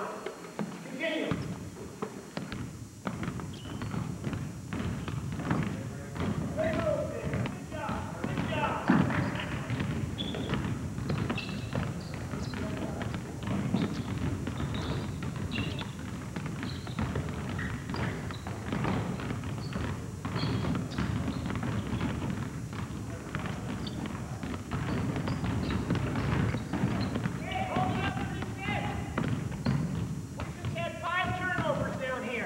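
Several basketballs dribbled on a hardwood gym floor, bouncing irregularly and overlapping, with indistinct voices in the gym.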